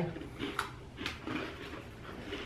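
Faint crunching and chewing of a hard, crispy coconut cookie, with a couple of small sharp clicks about half a second and a second in.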